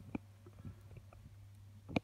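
Quiet room tone with a steady low hum and a few faint clicks, then a sharper click near the end.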